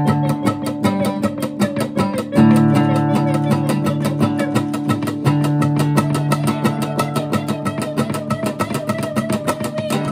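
Acoustic guitar music played to a fast, even pulse over sustained low notes. It grows fuller and louder about two and a half seconds in.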